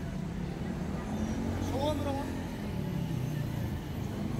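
Street traffic on a busy city street: a steady low rumble of passing cars and taxis, with the voices of people nearby. About two seconds in, a short voice-like call rises and falls in pitch.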